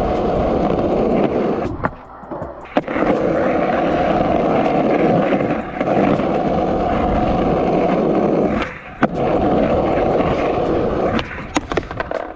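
Skateboard wheels rolling on concrete with a steady rumble. The rolling cuts out twice, about two seconds in and again near nine seconds, as the board leaves the ground, and each gap ends with a sharp clack as it lands. A few more clacks come near the end.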